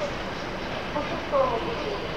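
ER2T electric multiple unit running on the rails as it leaves the station, a steady noise of wheels and running gear, with faint voices over it.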